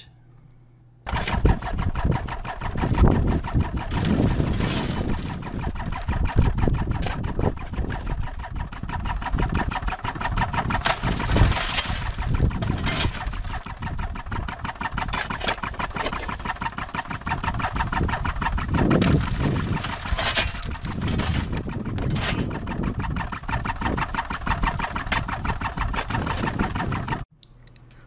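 Fritz Clemens dry washer running: a steady, fast mechanical chatter. Louder rattles come a few times as gravel and dirt are shovelled onto its screen.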